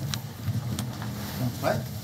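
Room background in a pause between speakers: a low rumble, two light clicks early on, and a short voice sound near the end.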